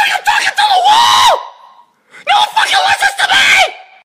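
A person's high-pitched screeching voice, in two long screeches with wavering, gliding pitch. The first breaks off about a second and a half in; the second starts a little after two seconds and stops near the end. It is a mock dinosaur screech voicing a toy T-rex hand puppet.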